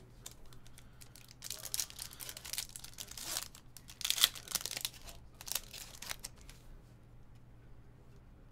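A Topps Finest baseball card pack wrapper being torn open and crinkled by hand: a run of crackling rips over about four seconds, loudest about halfway through.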